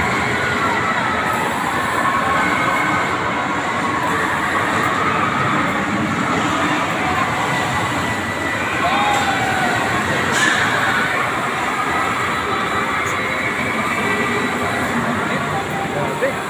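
A spinning amusement ride running, with a steady mechanical rumble and noise as the cars circle.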